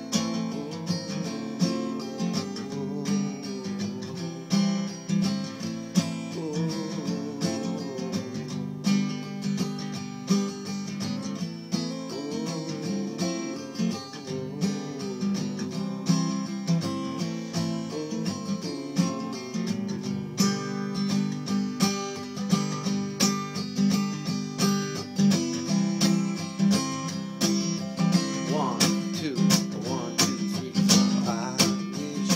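Acoustic guitar strummed in a steady, even rhythm.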